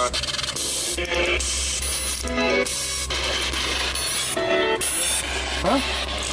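A ghost-hunting spirit box sweeping through radio stations: a constant hiss of static chopped by brief snatches of radio voices, which the ghost hunters take as a spirit speaking. A steady low hum runs underneath.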